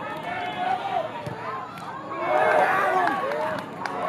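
Several people shouting and calling over one another during play on a soccer field, loudest from about two seconds in.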